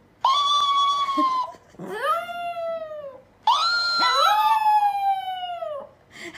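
Chihuahua howling: three long, high-pitched howls, each rising at the start and sliding down at the end, with short breaths between them.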